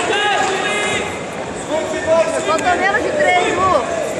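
Indistinct speech over the steady background noise of a busy hall, in two stretches: one about a second long at the start, and a longer one from just under two seconds in to near the end.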